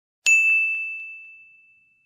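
A single high ding sound effect, struck about a quarter second in and ringing out as it fades over about a second and a half.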